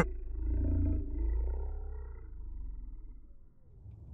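A deep, rumbling roar, loudest in the first second and a half, that fades away over about three and a half seconds.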